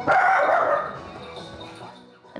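A small dog barking at animals on the television, a sudden loud burst at the start. Background music fades away after it.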